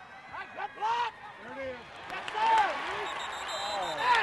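Several voices shouting and calling out, overlapping, with no clear words: short rising-and-falling yells scattered through the moment.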